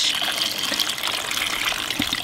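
Cold water pouring in a steady stream from a jug into a cooking pot, filling it around a whole fish and potatoes.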